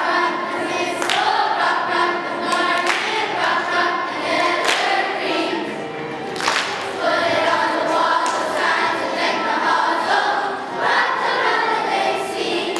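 A children's choir singing together, led by a conductor.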